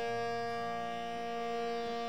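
Two tanpuras sounding a continuous drone: a steady shimmer of sustained, overlapping tones, with no voice and no drumming over it.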